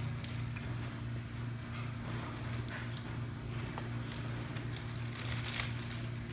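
Quiet eating sounds: scattered small clicks and rustles of chewing and paper sandwich wrappers being handled, over a steady low hum of the room.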